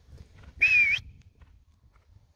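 A single short whistle, a slightly wavering breathy note lasting about half a second, about half a second in.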